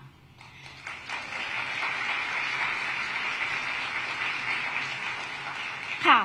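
Audience applauding, fading in about half a second in and holding steady by about a second in.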